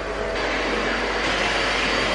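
Steady, even rushing noise with a low hum beneath it, holding one level throughout.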